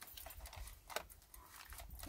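Faint clicks and scrapes of chicken wire being folded and pressed around a plastic bottle packed hard with plastic waste, a handful of light ticks spread irregularly through the moment.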